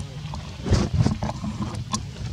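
Wind rumbling on the microphone, with a louder gust about a second in, and a few light clicks scattered through.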